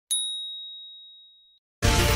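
A single high, clear 'ding' sound effect, struck once and fading out over about a second and a half. Music starts just before the end.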